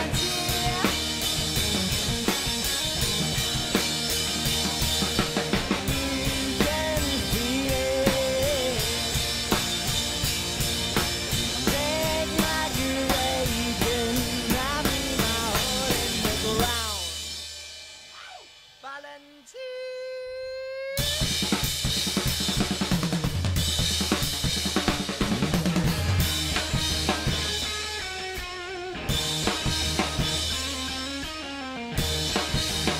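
Live two-piece band, electric guitar and Yamaha drum kit, playing a groove with steady kick, snare and cymbal hits. About halfway through the drums drop out for a few seconds while a single held guitar note rings and bends. Then the full band comes back in.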